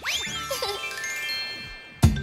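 A sparkly chime transition sound effect. It opens with a quick upward swoop, then a run of bright bell-like notes enters one after another and rings on, slowly fading.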